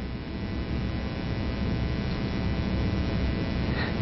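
Steady low electrical hum with a buzzy edge from many evenly spaced overtones, running without change through a pause in the talk.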